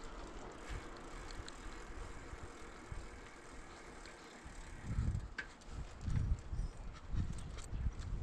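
A bicycle riding along, recorded by a bike-mounted camera: steady tyre and road noise with scattered light ticks and rattles. About five seconds in, wind buffets the microphone in several low gusts.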